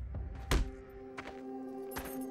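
A single low thud, a dramatic hit effect, about half a second in, followed by soft background music with sustained held notes.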